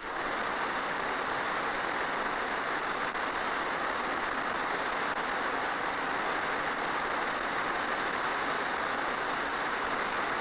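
Marlin test vehicle's rocket motor firing at full thrust after water exit: a steady, unbroken rushing noise.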